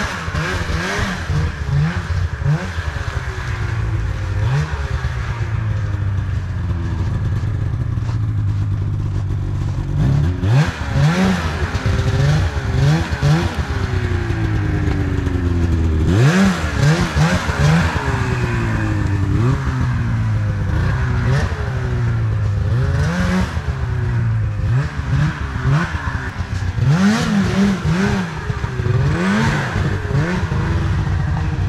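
Two-stroke snowmobile engine revving in repeated throttle bursts, its pitch rising and falling with each one. Several surges stand out as the loudest, around ten, sixteen and twenty-seven seconds in.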